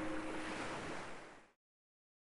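A steady rushing noise with a low sustained tone dying away under it, the whole soundtrack fading and cutting to silence about one and a half seconds in.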